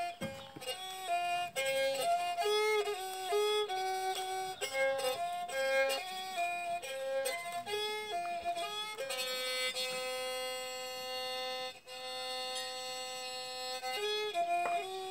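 Hmong xim xaus, a two-string bowed spike fiddle with a can resonator, playing a melody of short notes that step up and down. About nine seconds in it settles on one long held note.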